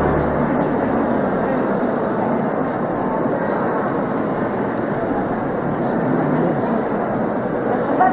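Steady murmur of a congregation talking among themselves in a large church, many voices blending into one babble. The organ's last chord dies away in the first half-second.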